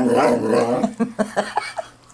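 Saluki vocalizing in play on a couch: a loud, drawn-out grumbling 'talking' sound for about the first second, then several short sharp calls.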